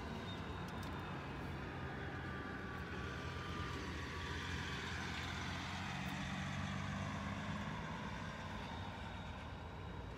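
Semi-truck engine running as the truck drives past, growing louder to a peak past the middle and fading toward the end, with a faint whine about three seconds in.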